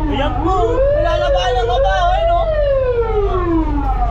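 Emergency vehicle sirens wailing: one rises in pitch for about two seconds and then falls, while another siren warbles over it. A steady low rumble from the moving truck runs underneath, heard from inside the cab.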